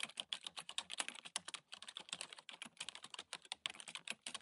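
Computer-keyboard typing clicks, a quick uneven run of keystrokes, laid as a sound effect under on-screen text that types itself out.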